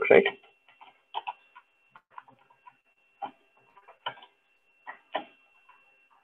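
Scattered computer keyboard keystrokes: a few isolated clicks, roughly one a second, with a faint steady high tone underneath.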